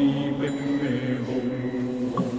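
A lama's low, steady chanting of Tibetan Buddhist prayers, held on nearly one pitch, as part of a blessing of thangka paintings.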